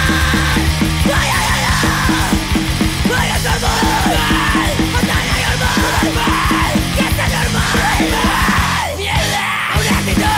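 Hardcore punk song: yelled vocals over fast drumming and distorted electric guitars, with a brief break in the low end just before the end.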